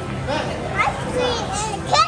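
A young child's high-pitched, wordless vocalizing: excited squeals and sing-song calls that rise and fall several times, over a steady low background hum.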